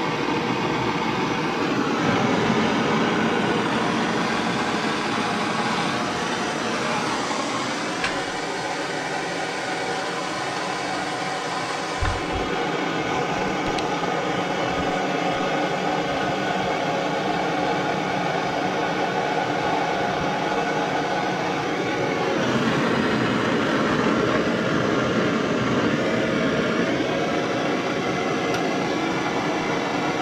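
Bernzomatic TS7000 propane torch burning with a steady rushing hiss from its flame, heating a small steel spring for hardening.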